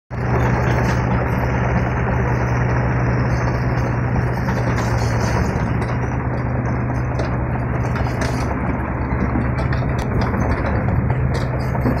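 Komatsu PC35MR-2 mini excavator's diesel engine running steadily with a constant low hum while the boom, arm and upper structure are worked.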